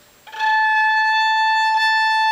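Violin A string bowed while a finger touches it lightly at its midpoint, sounding the second harmonic: one long, steady, pure note an octave above the open A, starting about a third of a second in.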